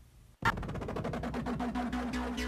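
Near silence, then about half a second in electronic music starts suddenly: a fast pulsing synthesizer over a steady low bass note.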